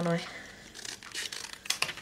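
Faint rustling and a few short crisp noises as a length of white pom-pom trim is handled and a piece of it is cut off.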